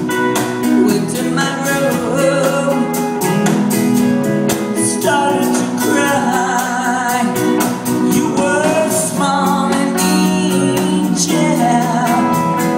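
Live rock band playing, electric guitars, bass and drums, with a woman singing lead.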